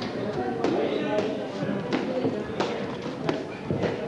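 Boxing gloves landing in short, irregular thuds, about six in four seconds, with voices talking underneath.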